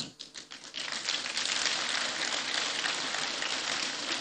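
Audience applauding. The clapping builds up within the first second and then holds steady.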